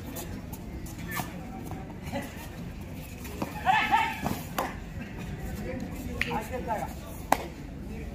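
Kabaddi players and onlookers shouting during a raid over a steady murmur of crowd noise. The loudest shouts come about halfway through and again near the end. There are a few sharp cracks, the strongest a single crack just before the end.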